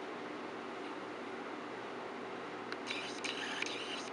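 Steady low room hum with a faint hiss. About three seconds in comes a brief crackling rustle lasting about a second and a half.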